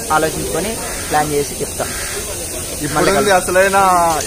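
Men talking in short phrases, growing louder near the end, over a steady background hiss.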